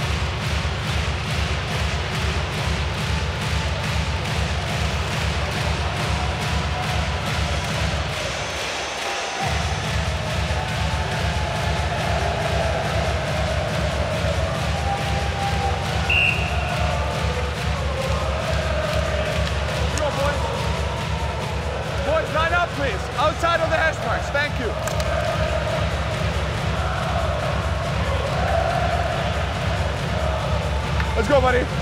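Arena music with a steady heavy bass beat fills the rink during a stoppage in play. The beat drops out briefly about a quarter of the way in. Voices rise over it in the last third, and there is a single short high tone near the middle.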